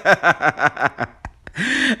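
A man laughing: a quick run of short, pulsing "ha"s, ending in a breathy intake of breath.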